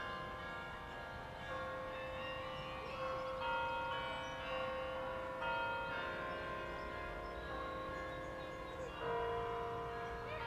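A slow melody of bell-like chiming tones, each note held steadily for about a second or more before the next begins, over faint outdoor background noise.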